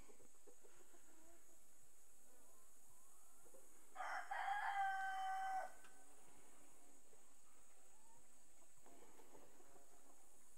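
A Dominique rooster crowing once, about four seconds in, a single drawn-out call of under two seconds.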